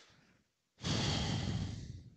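A long, breathy exhale like a sigh, starting about a second in and fading away.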